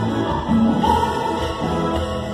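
Live música tropical band playing dance music at full volume, with long held melody notes over a steady bass.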